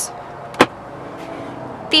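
A single sharp plastic click from the fold-down cupholder tray in the rear of the centre console being handled, over a faint steady hum.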